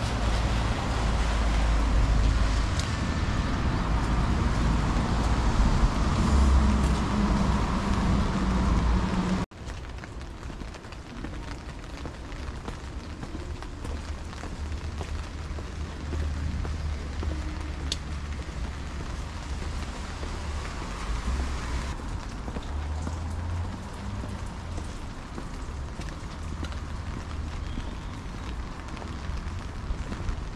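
Rain and wet-street ambience, an even hiss with traffic, and wind rumbling on the microphone. The level drops sharply about nine seconds in, leaving a quieter hiss of rain with occasional low thumps.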